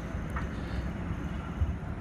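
Steady low outdoor background rumble with no distinct clank or impact.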